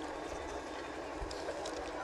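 Steady outdoor background noise, a even hiss over a low rumble, with a few faint clicks; no voice.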